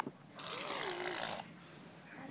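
A baby's breathy, raspy vocal sound lasting about a second, coming just after a high squeal.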